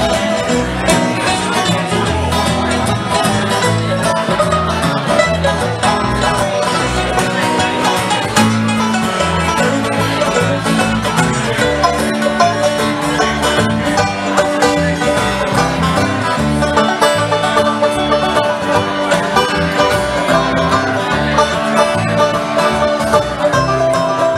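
A bluegrass band plays an instrumental break: a five-string banjo picks quick rolls over strummed acoustic guitar and plucked upright bass, at a steady, even level.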